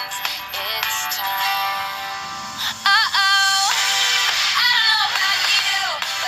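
Dance-pop song playing: a female lead vocal sings over a full backing track, holding one long note about halfway through.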